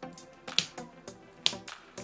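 Soft background music of light plucked notes, with two sharp snap-like clicks about a second apart.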